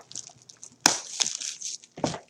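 A 2017 Panini Classics football hobby box handled and turned on a wooden tabletop: a sharp tap a little under a second in, then about a second of crinkly rustling from the box and its wrapping.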